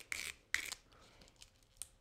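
A strip of duct tape being cut lengthwise down the middle and handled on a cutting mat: a few short, crisp cutting and rustling noises.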